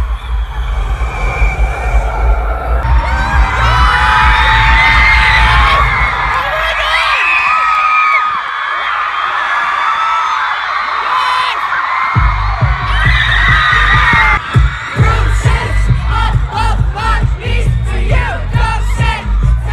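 Live concert music heard from within the crowd: a loud, heavy pulsing bass drops out for several seconds midway, then kicks back in. Over it the crowd screams and cheers.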